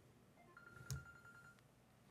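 Near silence: room tone with one faint click about a second in and a faint steady electronic beep lasting about a second.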